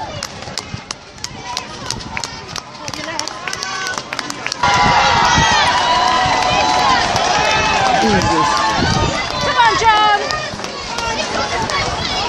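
Many marathon runners' footsteps pattering on the road, with spectators' voices. About four and a half seconds in the sound jumps louder to a crowd of spectators shouting and cheering, which eases off near the end.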